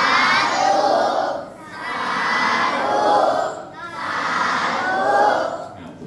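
A group of schoolchildren calling out "sathu" together three times, each call drawn out for over a second.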